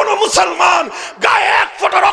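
A man's voice shouting hoarsely and very loudly through a public-address loudspeaker, in two strained cries.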